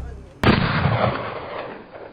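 Gunshot sound effect: a sharp crack about half a second in, followed by a rumbling tail that dies away and cuts off suddenly at the end.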